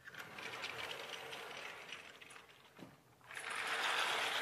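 Sliding chalkboard panels being moved in their frame: a mechanical running sound for about two and a half seconds, then a second, louder run starting near the end.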